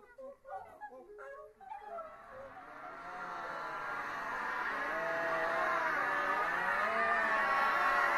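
A choir of about thirty untrained voices making improvised animal-like vocal sounds. It opens with scattered short chirps and yelps, then from about two seconds in many voices join in overlapping held, wavering tones that swell steadily louder.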